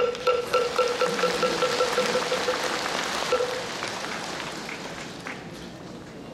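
Applause from a seated crowd, with a moktak (Korean Buddhist wooden fish) struck in a roll of quickening strikes and then a single closing strike about three seconds in: the signal for a bow. The clapping thins and dies away over the last seconds.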